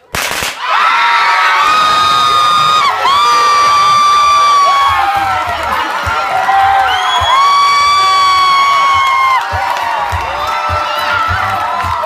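A handheld confetti cannon pops sharply right at the start, and a crowd immediately breaks into screaming and cheering, with several long, high-pitched held screams over the general shouting.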